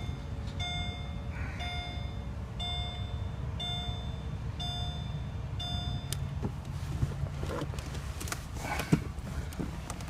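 Mercedes-Benz cabin warning chime: a short ringing tone repeating about once a second, which stops about six seconds in. After it come light clicks and rustling from handling inside the car.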